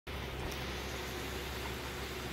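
Steady background hum with an even hiss underneath, unchanging throughout and with no distinct events.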